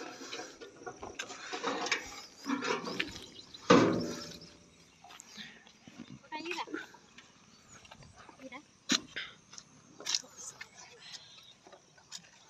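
Faint background voices with scattered clicks and knocks of handling; the cutter's motor is not running.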